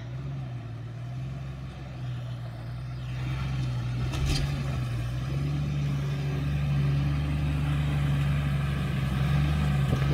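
Toyota Land Cruiser 70-series engine pulling steadily in low range as the vehicle crawls up a steep rocky track, growing louder as it comes closer.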